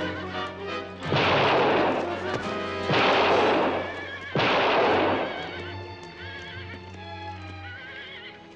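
Three revolver shots fired into the air, about a second and a half apart, each with a long echoing tail, and horses whinnying between and after them.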